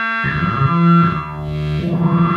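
Homemade synth noise box with an eight-step sequencer playing a run of electronic notes, jumping to a new pitch several times a second.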